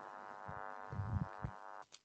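A steady buzzing tone that cuts out near the end, with a few low thumps around the middle.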